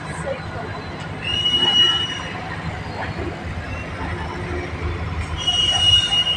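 Freight train of open hopper wagons rolling slowly with a steady low rumble, and a high-pitched wheel squeal that rises twice for about a second each, once early and once near the end.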